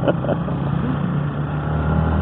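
Yamaha Y16ZR's 155 cc single-cylinder VVA engine running steadily under way, heard from on board the moving motorcycle with wind and road noise around it.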